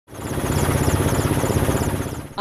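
Steady aircraft engine noise heard from on board: a loud, quickly pulsing low rumble with a thin high whine above it.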